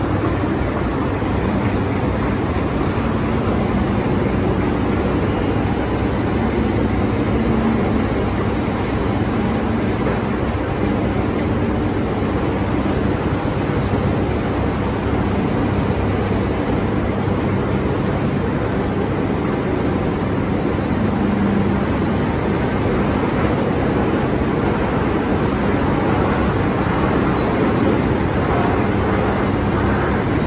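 Steady, unchanging drone of an idling diesel tractor engine close to the microphone, blended with the hum of sugar-mill machinery.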